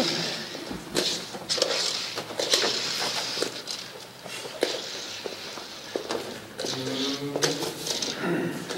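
Footsteps and small knocks of objects on a wooden stage floor, mixed with a man's wordless breathy vocal sounds and a short pitched moan near the end.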